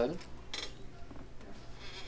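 The end of a spoken word, then a pause of quiet room tone in a meeting room, with one faint, brief sound about half a second in.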